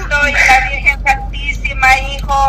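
A woman speaking, over a steady low hum.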